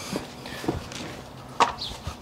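Quiet footsteps of a horse and its handler walking out of a straw-bedded stable, with one sharper knock about a second and a half in.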